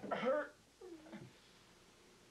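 An animal's cry: a loud call right at the start, then a fainter gliding call about a second in.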